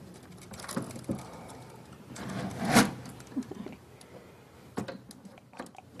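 Handling noise from computer hardware being fitted: scattered clicks and knocks with some rustling, the loudest a sharp knock about three seconds in.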